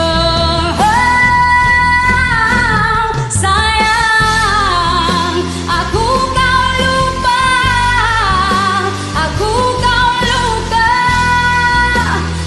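A woman singing long held high notes with slow slides between pitches, vocalising without clear words, over a karaoke backing track with a steady bass and beat.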